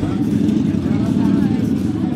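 Motorcycle engine idling steadily close by.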